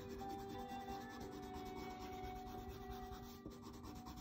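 Colored pencil rubbing on paper as it shades, under faint background music with held notes.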